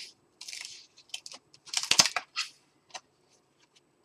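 Paper pages of an art journal being turned and handled: a run of short rustles and crackles, the loudest with a sharp knock about two seconds in.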